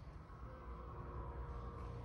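Schindler HT hydraulic elevator running in the hoistway behind the landing doors: a low steady hum with faint steady higher tones that start about half a second in, slowly growing louder.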